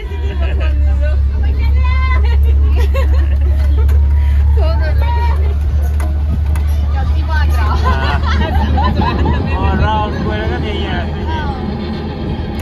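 Small amusement-park ride train running along, a steady low rumble that starts up at the opening, with excited children's voices and chatter over it.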